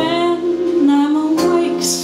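A small live jazz band plays an instrumental passage of a slow ballad: held melody notes with vibrato over an upright bass line.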